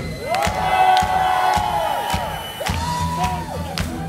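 Live synth-pop band playing a steady electronic beat, with three long held sung notes over it and crowd cheering.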